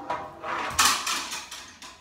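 A fishing rod and spinning reel being picked up and handled: a sudden rustling scrape, loudest just under a second in, fading within about half a second.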